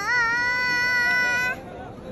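A young boy's loud, long held vocal cry on a steady high pitch, wavering slightly, that breaks off about one and a half seconds in. A crowd murmur follows.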